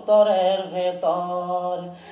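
A man singing a Bengali folk song without accompaniment, drawing out two long held phrases of about a second each.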